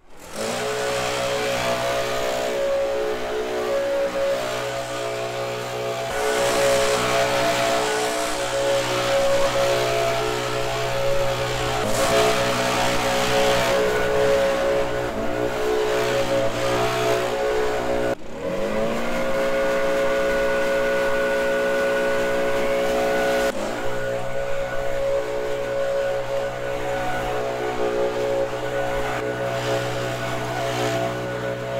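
Gas backpack leaf blower engine running at high throttle, with the blast of air loud and steady. Its pitch drops and sweeps back up a few times as the throttle is let off and opened again.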